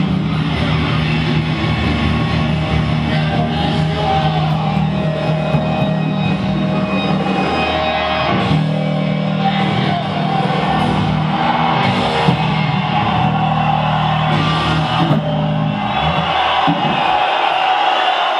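Electric bass guitar played loud through amplifiers in a heavy rock style, holding long low notes.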